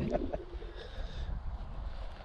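Low, steady wind rumble on the microphone in an open field.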